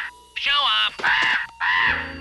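A crow cawing three times in quick succession, each caw about half a second long.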